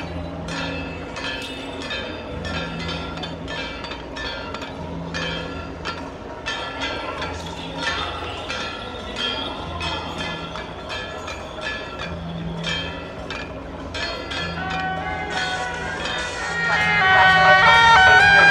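Temple procession band: gongs, cymbals and drum beat a steady pattern of about two metallic strikes a second. Near the end shrill suona horns come in louder over the percussion.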